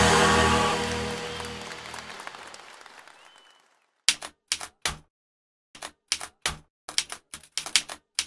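A logo-sting chord fades out over the first three and a half seconds. Then a typewriter-style typing sound effect clacks about a dozen times in four seconds, in irregular short strikes.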